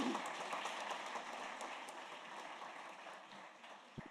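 Audience applauding, the clapping loudest at first and slowly dying away.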